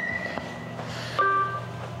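A short electronic beep from subway fare equipment about a second in, with a couple of higher tones that ring on briefly. It sits over a steady low hum and a faint thin whine.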